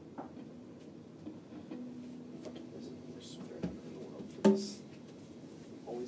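Quiet room with a faint low hum, broken about four and a half seconds in by a single sharp knock that rings briefly at a low pitch.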